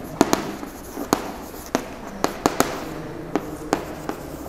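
Chalk writing on a chalkboard: a string of irregular sharp taps as the chalk strikes the board, with light scratching between them.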